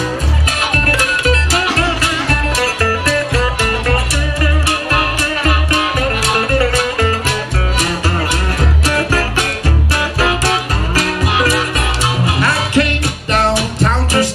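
Live acoustic blues band playing an instrumental passage: harmonica playing wavering, bending notes over guitar, a plucked upright double bass and the steady scraped beat of a washboard.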